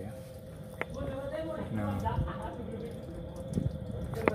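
Soapy water dripping and bubbling on a leaking transmission air-valve fitting, the sign of escaping compressed air, under a man's low voice and a faint steady hum. There is one sharp click about a second in.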